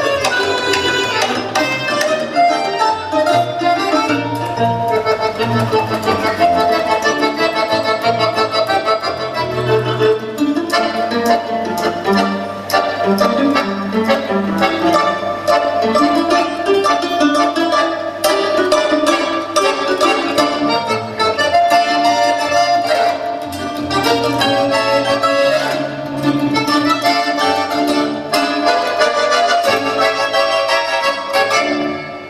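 Folk-instrument ensemble of two domras, a bass balalaika, an accordion and a guitar playing a lively tune: plucked string melody and bass over sustained accordion chords.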